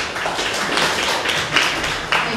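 Small audience clapping: a dense patter of hand claps.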